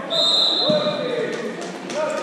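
A referee's whistle blown once, a steady shrill blast of about a second, echoing in a sports hall. Voices and basketball bounces on the court go on around it.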